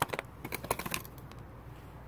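A white-painted framed sign being set down on a stone wall ledge: a quick run of small clicks and taps in the first second as it knocks and scrapes into place.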